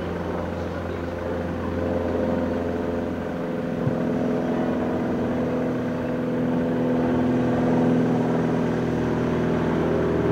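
A van's engine running steadily at low speed as the van creeps forward, with a car moving slowly ahead of it. The engine note holds steady and grows a little louder about two seconds in.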